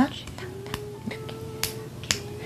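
A few sharp, irregular taps of fist knocking on fist as the Korean Sign Language sign for 'make' is formed, over a faint steady tone.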